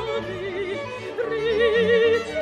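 Operatic soprano singing held notes with a wide vibrato over an orchestra, stepping up to a new note a little over a second in.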